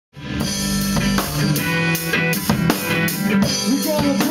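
Rock band playing an electric guitar over a drum kit, starting abruptly with steady drum hits a few times a second; sliding notes come in near the end.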